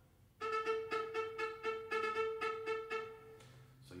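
Solo viola playing one repeated note with bouncing ricochet bow strokes, about four strokes a second, for about three seconds, starting half a second in.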